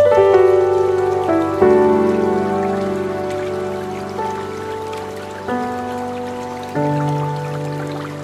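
Slow, soft relaxation music: chords struck one after another and left to fade, a new one every second or so, over a faint hiss of running water.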